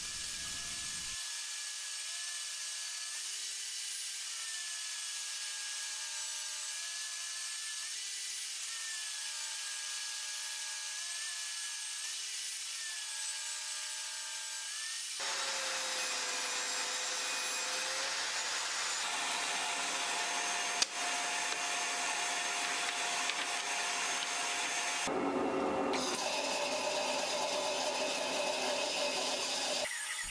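Table saw ripping a redwood board into strips: a steady high-pitched blade whine that changes tone abruptly a few times between passes, with one sharp click about two-thirds of the way through.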